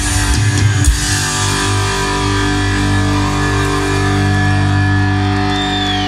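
Punk rock band playing live, with loud electric guitars, bass and drums. Drum hits and guitar fill the first second, then the guitars and bass hold one sustained chord that rings on, as a song ends.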